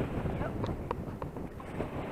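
Wind buffeting the microphone with a steady low rumble, and a few faint clicks about a second in.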